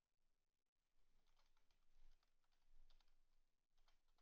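Very faint keystrokes on a computer keyboard: a scattered run of soft key clicks starting about a second in.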